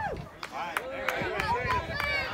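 Several high-pitched voices calling out and chattering over each other, with a string of sharp claps.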